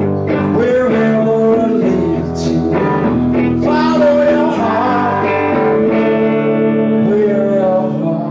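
A live rock band playing a blues-rock song on electric guitars, with a man singing at the microphone.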